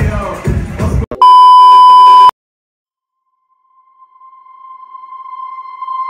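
Club music cut off about a second in by one loud, high electronic beep lasting about a second, then a moment of silence; a faint steady tone at the same pitch then swells up toward the end.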